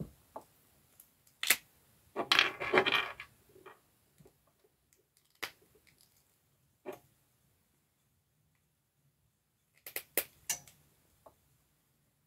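Scattered small clicks and taps of a hard-plastic action figure and its parts being handled, with a denser rattle of clicks about two seconds in and another brief cluster near the end.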